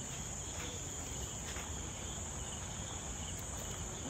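Steady chorus of night crickets, a continuous high-pitched trill.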